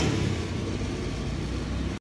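Steady background noise of road traffic, with an engine running nearby: an even, unchanging rumble with hiss above it.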